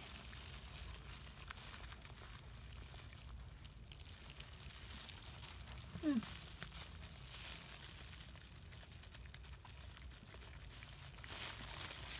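Thin plastic disposable gloves crinkling and rustling as hands handle a newborn puppy, a faint steady crackle of many small clicks. A short falling "hmm" about halfway through.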